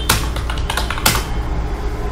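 Typing on a computer keyboard: a run of quick key clicks, with two louder strikes, one at the very start and one about a second in.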